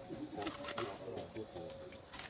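A dove cooing, with other short pitched calls around it.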